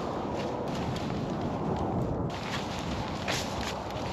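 Nylon tent fabric rustling and flapping as a dome tent is pulled into shape by hand, with scattered light clicks and taps from its poles.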